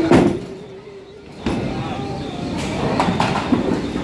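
Bowling ball thudding down onto the wooden lane just after release, then a steady rumble as it rolls down the lane.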